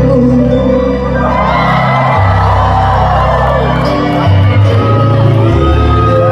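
A live band playing through a hall's PA system, with sustained bass notes changing every second or two under sung vocal lines, and the crowd whooping and shouting along.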